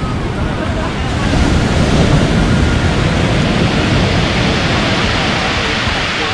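Pacific Ocean waves breaking on a pebble beach, the surf swelling about a second in and easing off, with a hissing wash toward the end. Wind rumbles on the microphone throughout.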